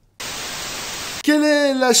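A burst of steady television-style static hiss, about a second long, that starts and cuts off abruptly, used as an edit-transition sound effect. A man's voice begins straight after it.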